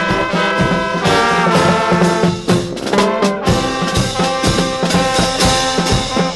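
Marching brass band playing a tune on trumpets and trombones, with steady bass-drum beats under it.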